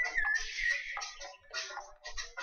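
Recorded wildlife calls mixed with music, with one call wavering in pitch in the first second.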